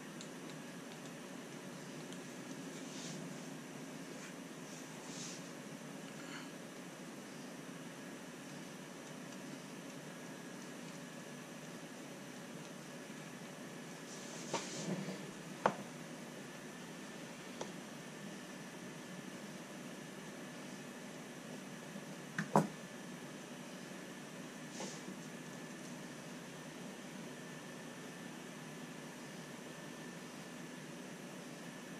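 Steady background hum, with occasional sharp clicks and taps as small RC crawler axle parts and a hex driver are handled during hand assembly on a workbench. The clicks come in a small cluster about halfway through, then singly, with the loudest about three-quarters of the way in.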